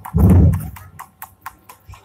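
A loud, dull thump, then a run of sharp clicks and knocks, about four or five a second.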